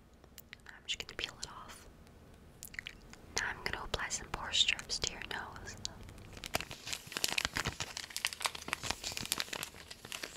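Skincare product packaging crinkled and handled close to the microphone, a dense crackling that starts about six and a half seconds in and runs on, after a few seconds of soft whispering.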